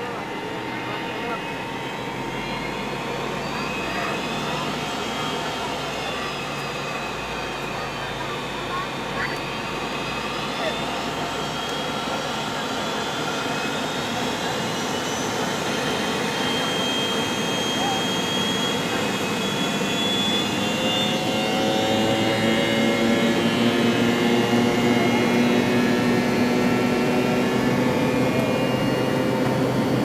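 Cabin noise of a McDonnell Douglas MD-80 taxiing, heard over the wing: a steady rumble and hum from its rear-mounted Pratt & Whitney JT8D turbofans. The sound slowly gets louder, and in the last third several engine tones rise and strengthen as thrust comes up.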